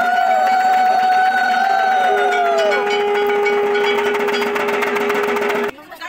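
Ritual puja music: long steady blown tones over dense, rapid clanging percussion. A second, lower steady tone comes in about two seconds in, and the sound cuts off suddenly just before the end.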